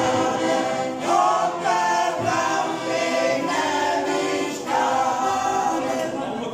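A senior community choir of women singing together, in long held phrases that change about every second or so.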